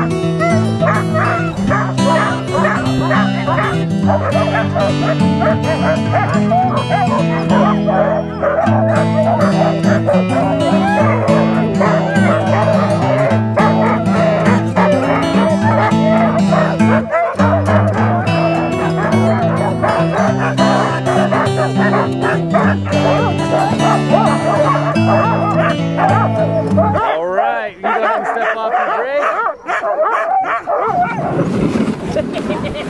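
Excited sled dogs in harness barking and yelping, eager to run, over background music with steady chords. The music stops about 27 seconds in, leaving the dogs' barking.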